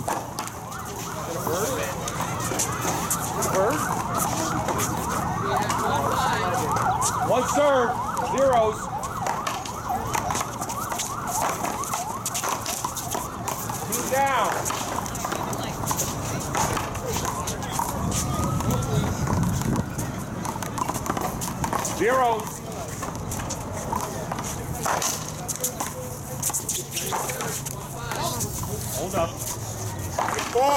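Overlapping voices of players and spectators calling out and chattering, with occasional sharp knocks of a ball struck by a solid paddle during a rally. A single slow rising-and-falling tone comes in near the middle.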